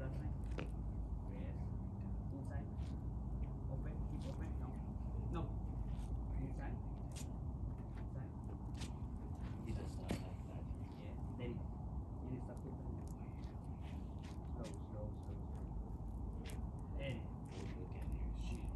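Light, irregular taps and scuffs of a soccer ball and sneakers on concrete during close dribbling, over a steady low rumble.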